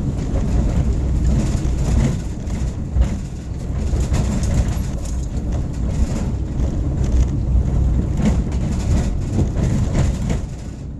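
Car driving along a rough residential street: steady low road and engine rumble with frequent small knocks and rattles from the bumps.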